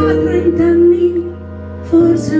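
A woman's voice holding a long sung note with vibrato over sustained stage-piano chords; the note ends a little past a second in, and the accompaniment goes quieter until a new chord sounds near the end.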